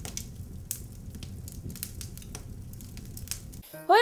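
Edited intro audio: a steady low rumble with many scattered crackles and clicks, cutting off shortly before the end.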